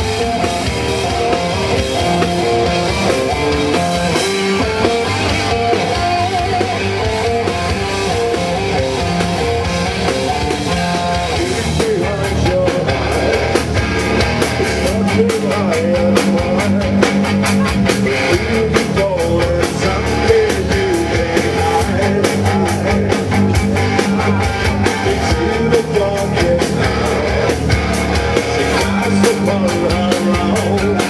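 A rock band playing live: electric guitar and drum kit. About twelve seconds in, the drumming turns denser with cymbals and singing comes in over the band.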